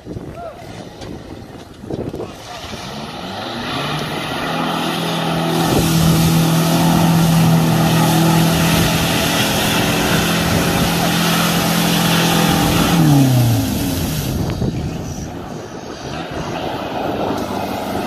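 An off-road 4x4's engine revs up hard as the vehicle ploughs into a mud-filled pond. It is held at high revs for several seconds under a loud rush of mud and water spraying from the spinning wheels. About three-quarters of the way through, the revs fall away.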